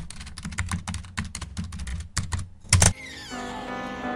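Rapid, irregular clicking like keyboard typing, a sound effect for a title-text animation, ending in a louder hit just before three seconds in. Soft music with held notes then begins.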